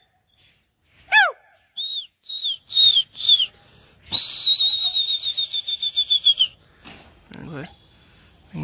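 Loud human whistling: a downward-swooping whistle, then four short rise-and-fall whistles, then a long warbling whistle held for about two and a half seconds.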